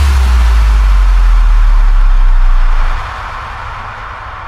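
Progressive house track in a breakdown: a very deep sub-bass tone slides down in pitch and is held low under a fading wash of noise. About three seconds in, the bass cuts out and the music drops back much quieter.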